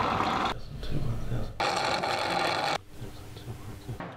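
A drink sucked noisily up through a drinking straw: two long rasping slurps of about a second each, the second starting about a second after the first ends.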